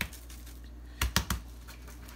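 A gloved hand patting a seasoned raw brisket to press the salt-and-pepper rub into the mustard slather: a quick run of about four soft taps a little past a second in.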